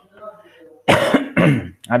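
A man clears his throat with a short cough about a second in, and voiced sounds follow.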